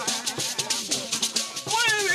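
Traditional Bissa griot music: gourd shakers rattling a fast, steady beat under voices singing, with a small koni lute. A high gliding vocal line rises and falls near the end.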